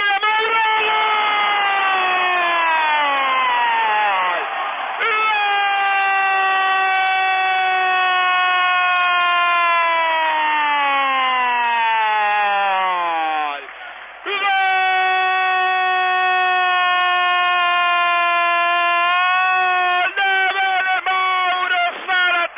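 A football commentator's drawn-out shouted goal cry, 'gooool', held in long loud notes whose pitch slides downward. The cry breaks for short breaths about four and fourteen seconds in, then ends in shorter calls.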